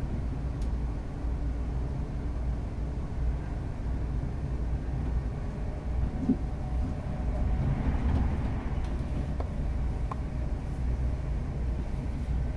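Cabin running noise of a class 350 Desiro electric multiple unit on the move: a steady low rumble from the wheels and running gear on the rail. It swells a little about eight seconds in, with a few faint clicks and knocks.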